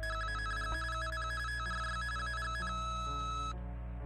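Electronic telephone tone from an answering-machine tape: a high warble flicking rapidly between two pitches, turning to a single steady beep that cuts off about three and a half seconds in. Soft background music plays underneath.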